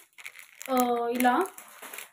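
Clear plastic packets of earrings crinkling as they are handled, with a voice holding one drawn-out, untranscribed sound a little over half a second in, its pitch rising at the end.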